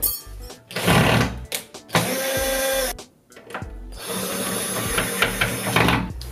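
Cordless drill-driver running in two steady spells, first for about a second, then for about two seconds, on the screws of a wardrobe door handle.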